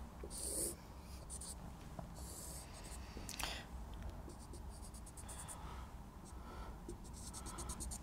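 Marker pen drawing on a whiteboard: a run of short, faint scratching strokes with brief pauses between them as a graph is sketched.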